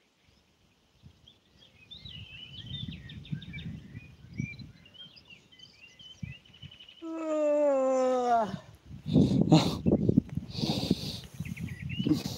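Wind rumbling on the microphone, with small birds chirping faintly above it. About seven seconds in, a loud drawn-out call of about a second and a half sounds, falling slightly in pitch. Irregular rustling knocks follow it.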